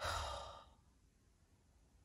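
A man's sigh: one breathy exhale lasting about half a second.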